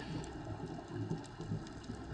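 Muffled underwater ambience: a low, steady rumble with a faint hiss and no distinct events.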